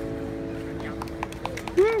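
The last strummed chord of a busker's acoustic guitar song rings on and slowly fades. From about a second in, scattered claps begin. Near the end a short voice call rises and falls.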